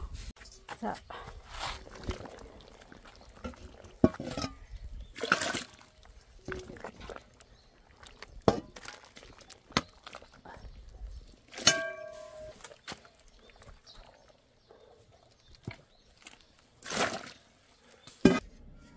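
Freshly boiled bamboo shoots being handled out of a cast-iron cauldron of hot water: irregular splashes, drips and knocks of the shoots against the water and a metal colander.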